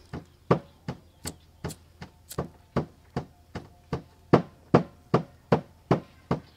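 Steady rhythmic knocking, about two to three sharp knocks a second, a hard tool striking a hard surface; the knocks are loudest a little past the middle.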